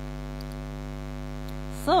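Steady low electrical mains hum, with a woman's voice starting right at the end.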